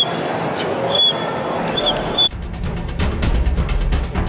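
Crowd chatter echoing in a sports hall, with a few short, high chirps. About two seconds in, the hall sound cuts off and background music with a deep, driving beat takes over.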